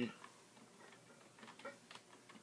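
Faint computer keyboard keystrokes: a scattering of soft, irregular clicks as a word is typed.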